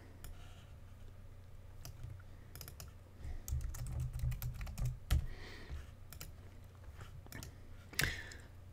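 Computer keyboard typing: scattered keystrokes, some in short runs, as a word is typed in, over a faint low hum that rises for a second or so in the middle.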